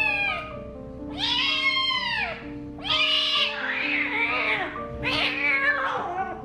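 Kitten crying out in about four long, drawn-out meows in a row, the third harsher and rougher, in distress while held down for a painful injection. Background music with soft held notes plays underneath.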